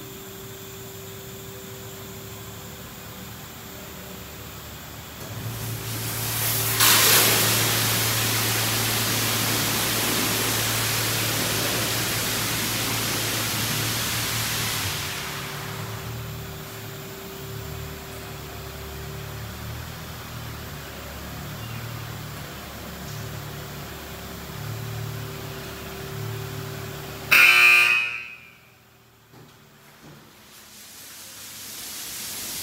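Car wash bay machinery: a steady hum, then a loud rushing noise over a low motor drone lasting about ten seconds. Near the end comes a brief loud pitched blast, after which it goes quiet.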